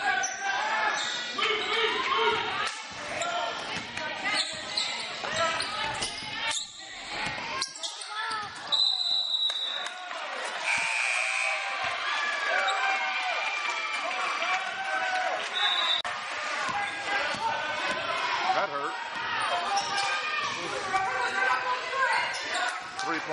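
Basketball game in a gym: a ball dribbling and bouncing on the hardwood floor amid spectators' and players' voices in an echoing hall. A short high steady tone sounds about nine seconds in, and another, lower one about two seconds later.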